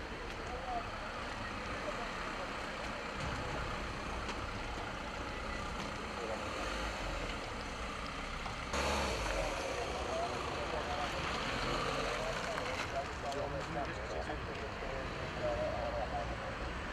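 Fiat Doblò van's engine running as the van moves off, under steady street noise with indistinct voices of people around it. A hiss grows louder about halfway through for some four seconds.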